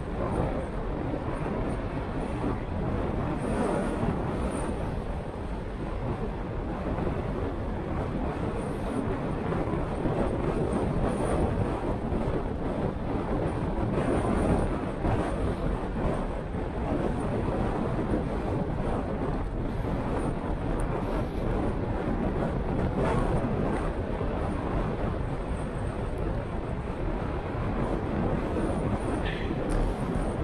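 Wind on the microphone of a handlebar-mounted action camera on a moving bicycle, over a steady rumble from the tyres and the road. The noise stays at an even level throughout.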